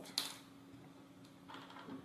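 Quiet room tone with a faint steady hum, a short hiss just after the start and another soft one near the end.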